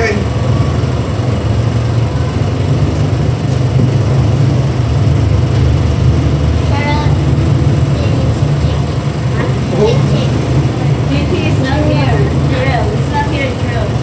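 A steady low rumble under the whole stretch, with quiet, indistinct voices murmuring from about the middle on.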